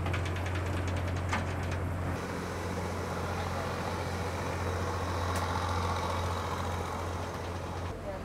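An engine on the houseboat running steadily with a low, even hum. The texture shifts slightly about two seconds in, then holds steady.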